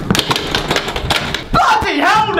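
Bicycle clattering and rattling as it bumps down a staircase, a fast run of knocks, then a voice crying out near the end.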